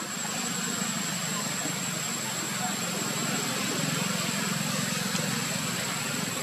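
Steady background hum and hiss with a constant thin high-pitched whine running through it; no distinct event stands out.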